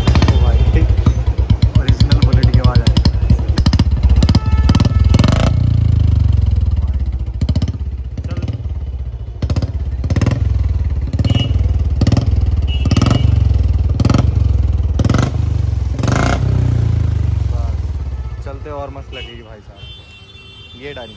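Royal Enfield Bullet 350's single-cylinder engine running loudly through a short aftermarket 'mini Punjab' silencer, with repeated sharp throttle blips. The sound dies away near the end.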